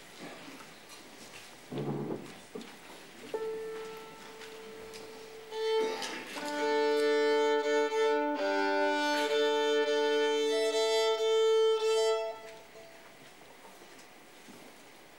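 Violin playing, quietly at first, then long, loud sustained notes, some sounded two at a time, from about six seconds in, stopping abruptly about twelve seconds in.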